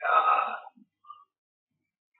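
A short vocal sound from a man, about half a second long at the start, followed by silence.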